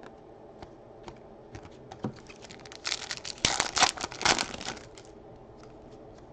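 A stack of glossy foil hockey trading cards being flipped through by hand, the cards clicking and sliding against each other. A few light scattered clicks come first, then a busier stretch of clicking and rustling about three to five seconds in.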